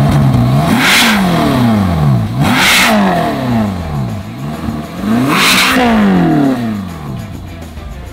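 Ferrari California's V8 revved three times while stationary, heard from behind its quad exhaust pipes: each rev climbs quickly to a loud peak and falls back toward idle, the peaks about a second, three seconds and five and a half seconds in.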